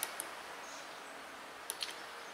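Music from a small speaker cuts off abruptly as playback is paused, leaving a faint steady hiss. A few soft clicks of the player's tactile push buttons come just after the cut and again near the end.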